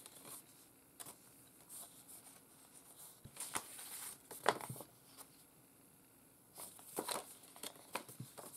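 Paper rustling and crinkling as printed paper envelopes are unfolded and handled, in several short rustles, the loudest a little past halfway.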